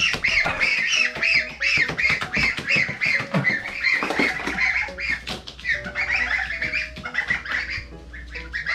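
A group of month-old goslings peeping: many short, high, arched calls overlapping several times a second.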